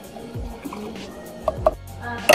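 Yakult pouring from its small plastic bottle into a glass, under background music. Two short, sharp high blips come about one and a half seconds in.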